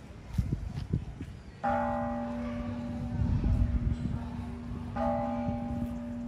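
A Buddhist temple bell struck twice, about three seconds apart. Each stroke rings on with a steady low hum under several brighter, higher tones that fade faster.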